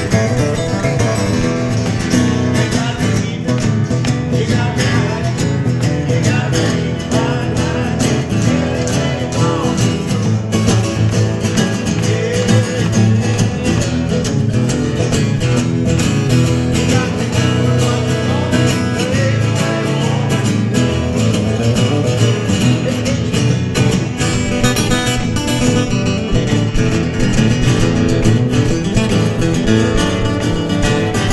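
Three steel-string acoustic guitars playing an instrumental together, with a busy picked lead over picked and strummed chords. The playing is loud and steady throughout.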